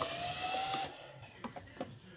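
Cordless impact driver running as it backs a screw out of the amp's rear panel, with a steady whine that rises slightly in pitch. It stops about a second in, followed by a few small clicks as the driver bit is moved to the next screw.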